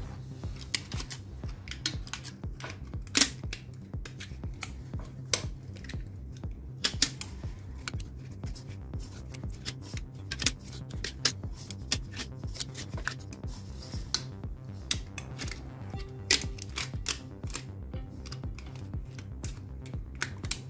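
Hand winding of enamelled copper magnet wire onto a cut-off saw armature: irregular light clicks and ticks as the wire is pulled through and pressed into the paper-lined slots. Soft background music runs underneath.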